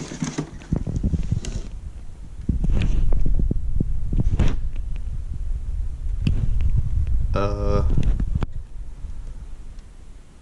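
Rubbing, knocks and a heavy low rumble of handling noise as a cardboard shoebox lid is taken off and the box handled with the camera jostling, with sharp clicks scattered throughout. A short voiced sound, about half a second long, comes about seven and a half seconds in.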